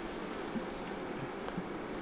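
Honey bees humming steadily from an open hive colony, with a few faint light clicks.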